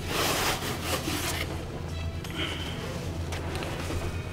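Rustling and scraping as a pair of work pants is pulled out of a cardboard shipping box, loudest for the first second and a half, then quieter handling. Background music plays under it.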